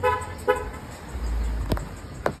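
Two short car horn toots about half a second apart, followed by a low rumble on the microphone and a sharp knock near the end.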